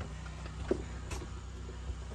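Steady low hum of an engine running, with a couple of faint knocks about halfway through.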